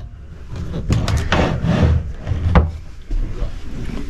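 Wooden knocks and clicks of travel-trailer cabinet doors and hardware being handled: a quick cluster of three clicks about a second in and a single knock later, over a low steady hum.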